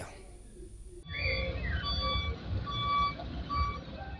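After a second of quiet, a road-construction machine's reversing alarm beeps repeatedly, about two beeps a second, over a low engine rumble.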